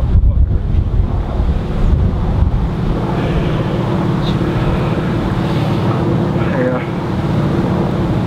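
Wind buffeting an outdoor microphone: a heavy low rumble that eases after about three seconds into a steadier rumble.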